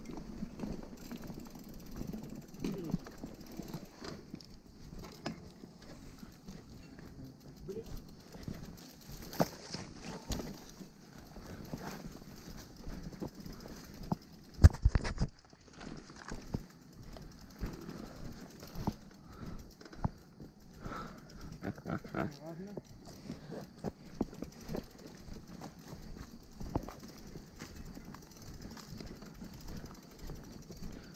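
Mountain bike rattling and knocking as it rolls over a rough, muddy dirt track, with irregular clicks from the frame and chain and one sharp, loud thump about halfway through.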